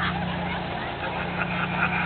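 An engine idling steadily with a low hum, over background crowd noise.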